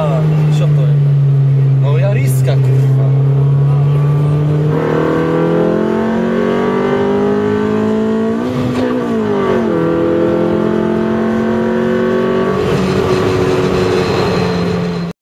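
Tuned Honda CRX engine heard from inside the cabin, running at a steady pitch at first. From about five seconds in it accelerates with the pitch rising, drops in pitch at a gear change around nine seconds, then holds and starts to climb again near the end.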